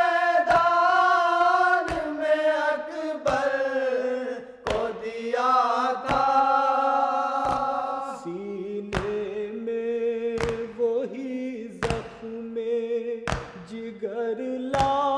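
Voices chanting a Muharram devotional lament in long, slowly bending held notes, with a sharp beat about every second and a half.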